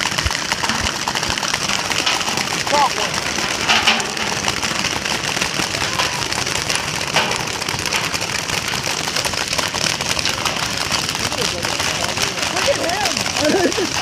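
Many paintball markers firing across the field at once: a dense, continuous crackle of rapid small pops.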